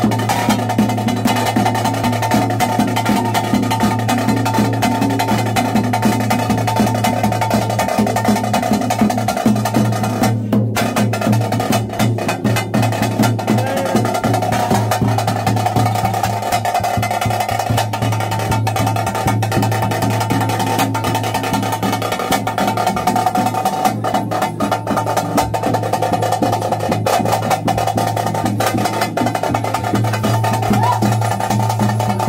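Ritual drumming: temple drums beaten in a fast, unbroken roll over a steady held drone.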